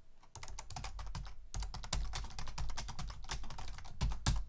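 Typing on a computer keyboard: a quick, steady run of keystrokes.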